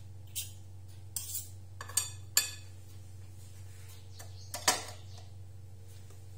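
Metal knife and spoon clinking and scraping against a ceramic salad bowl as the salad is worked: several sharp clinks in the first two and a half seconds and the loudest one near five seconds, over a steady low hum.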